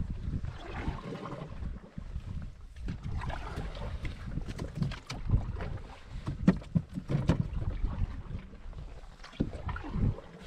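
A canoe being paddled through water, with irregular knocks and taps on its metal hull over the low rumble of wind on the microphone.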